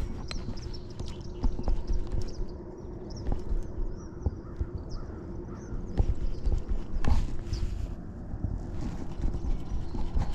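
Small birds chirping faintly in the distance over a low rumble, with a faint steady hum and scattered light clicks and knocks.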